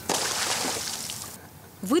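A thrown lifebuoy hitting pond water: a sudden splash, then water sloshing that dies away within about a second and a half.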